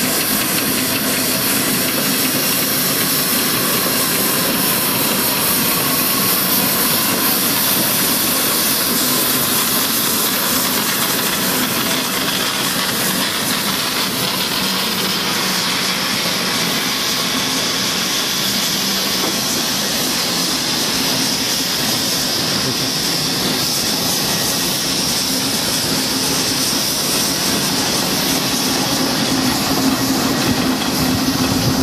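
Steam traction engines working under load as they haul a heavy locomotive on a low-loader trailer, passing close by with a loud, steady hiss of steam over their running.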